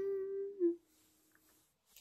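A girl humming one steady "mmm" with her lips closed, held for a little over half a second before dipping lower and stopping.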